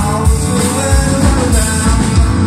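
Live rock band playing: keyboard, acoustic and electric guitars over a drum kit with a steady kick-drum beat.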